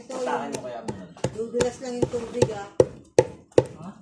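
Pestle pounding lumps of incense and kamangyan resin in a mortar: sharp strikes about two to three a second, crushing the resin toward a powder.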